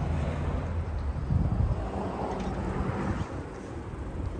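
Wind rumbling on the microphone outdoors: a steady low rumble without distinct events.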